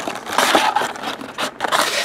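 Cardboard box flap opened and foil trading-card packs pulled out by hand, rustling and scraping in two bursts with small clicks between.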